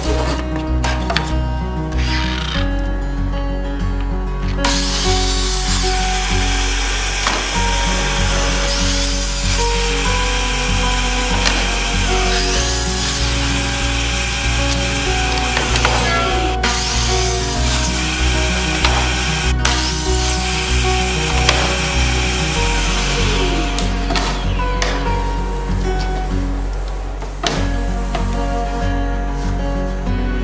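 Ridgid 12-inch dual-bevel mitre saw running and cutting mitres in pre-primed 1x2 cypress. There are several cuts from about five seconds in until a little past the middle, with the blade winding down between them. Background music plays throughout.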